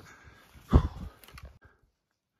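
A hiker on the move through forest undergrowth: a loud thump about three-quarters of a second in, then a few sharp clicks or snaps, before the sound cuts off abruptly.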